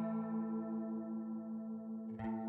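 Outro music: one sustained, ringing chord held with no new notes, its upper overtones slowly fading.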